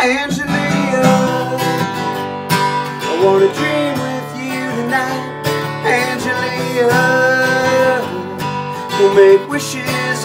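A man singing with his own strummed acoustic guitar. The guitar comes back in sharply right at the start after a brief pause.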